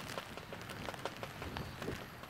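Steady rain falling, with scattered drops ticking close by.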